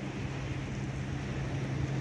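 Steady outdoor beach background: an even hiss of wind and surf with a constant low hum underneath.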